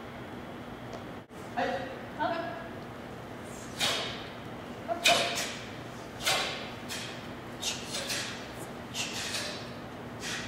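Martial-arts sparring contact: a series of about eight sharp slaps and thuds over several seconds, from strikes, kicks, bare feet on a gym floor and snapping uniforms, echoing in a large hall. Two short voice sounds come a second or two in.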